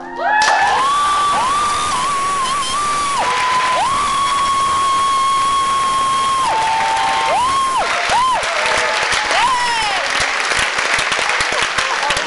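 An audience applauds and cheers, breaking out suddenly about half a second in and keeping up steadily, with repeated loud whistles that swoop up and down in pitch over the clapping.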